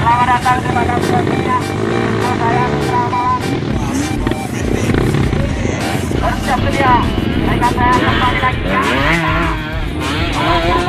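Many dirt-bike engines running and revving together, mixed with music carrying a wavering singing voice.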